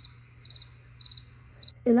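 An insect chirping: four short chirps, each made of a few rapid pulses, about one every half second, over a faint steady hum.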